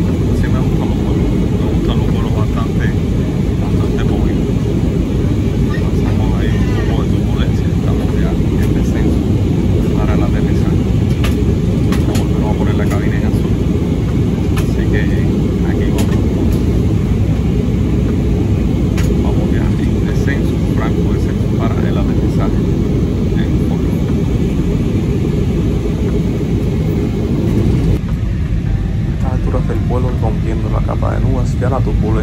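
Steady, loud rumble of a jet airliner's cabin in flight: engine and airflow noise, with a voice faintly heard over it.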